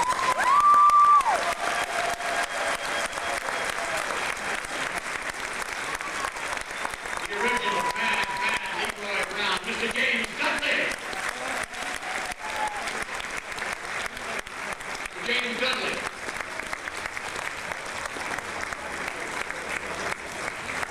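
An audience clapping steadily throughout, with a loud held whistle about half a second in and another about eight seconds in, and scattered voices in the crowd.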